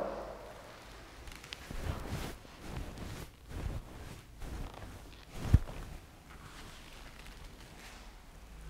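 Faint rustling of clothing and shuffling of feet on a concrete floor as people bend forward into a stretch, with one short dull thump about five and a half seconds in.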